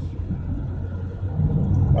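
Steady low rumble of a car being driven, heard from inside the cabin: engine and road noise.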